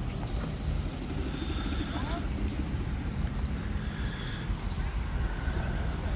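Engines running at a low, steady speed, with faint voices in the background.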